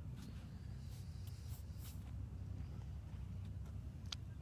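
Faint low rumble of wind buffeting the microphone, with a few faint small clicks.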